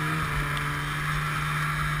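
Snowmobile engine running at a steady speed under a steady hiss.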